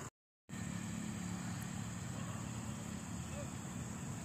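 A steady high cricket trill over a low, steady motor-vehicle engine hum, broken by a half-second of dead silence just after the start.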